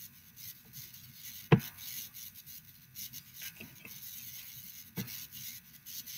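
Computer mouse being moved and clicked on a desk: a light rubbing with a few knocks and clicks, the loudest about one and a half seconds in and two more later.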